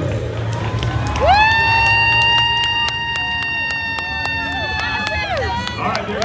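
A starting air horn blasts one long steady note of about four seconds, swooping up in pitch as it starts and down as it stops, to start the race. A second blast begins near the end.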